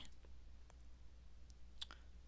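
Near silence: a steady low hum of room tone, with a few faint clicks about one and a half seconds in.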